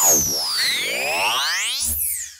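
Synthesized sound-effect sting that starts suddenly: several swooping electronic tones, one falling from high while others rise, with a low thud near the end.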